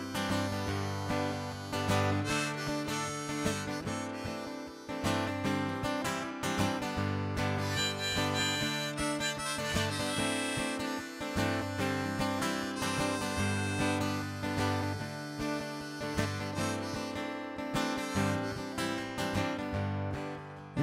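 Harmonica played in a neck rack over a strummed acoustic guitar: an instrumental break with no singing.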